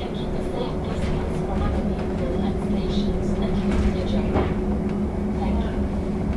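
Cabin noise of a VDL Citea SLE-129 Electric bus on the move: a steady electric drive hum over low road rumble.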